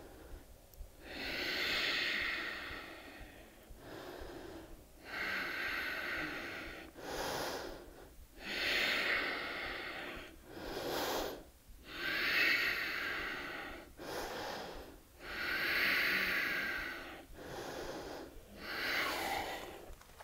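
A woman breathing deeply and audibly to recover after a hard high-intensity interval, with long drawn breaths in and out, about one full breath every three to four seconds.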